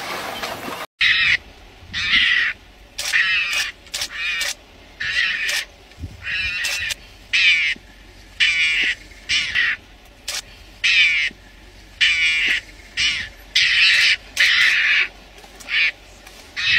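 An animal's short calls repeated a little more than once a second, starting about a second in after a brief cut-out.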